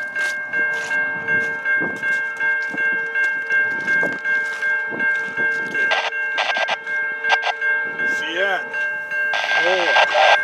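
Railway grade-crossing warning bell ringing in a steady repeated pulse as a freight train approaches. A louder rush of the train comes in near the end.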